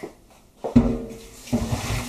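Pasta cooking water poured from a pot into a colander in a stainless steel sink, gushing and splashing. It starts about two-thirds of a second in, eases briefly, then surges again.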